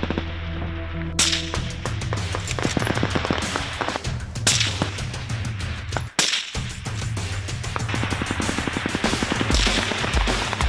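Live-fire gunfire: a rapid, dense string of shots starting about a second in, with several louder reports, over a steady music track.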